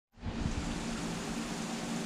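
Steady background noise: an even hiss with a low hum under it, and a few soft low bumps in the first half second.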